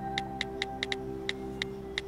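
Smartphone touchscreen keyboard tap clicks, about eight short, irregularly spaced taps as a text message is typed, over soft sustained background music.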